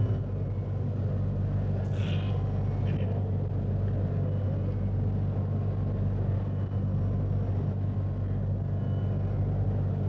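A lull in an old live Carnatic concert recording: a steady low hum with background hiss while the instruments fall silent, with a brief faint higher sound about two seconds in.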